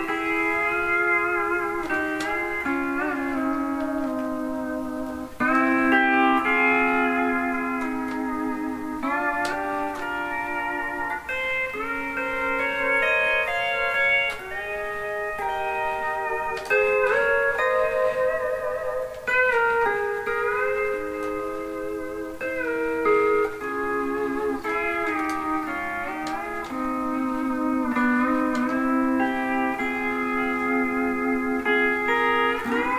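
MSA Millennium pedal steel guitar played solo: sustained chords and melody notes that slide and bend from one pitch to the next as the bar moves and the pedals are worked.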